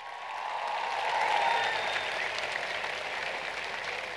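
Large audience applauding, building up over the first second and a half and then easing off slightly.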